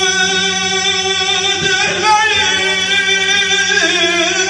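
A man singing a Turkish folk song into a handheld microphone, holding long drawn-out notes with slow wavering ornaments and moving to a new note about halfway through, over a steady low accompanying tone.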